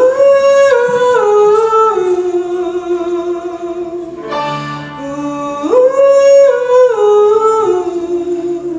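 A young woman's solo voice singing wordlessly into a microphone: a long high held note that steps down through lower held notes, with the same falling phrase starting again near the end.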